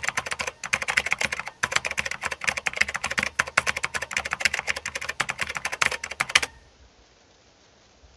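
Rapid keyboard typing, a quick run of many keystrokes a second that stops suddenly about six and a half seconds in.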